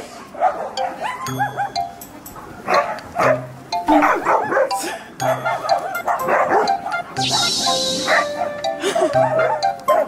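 Background music with a steady beat, and dogs barking now and then as they chase and wrestle.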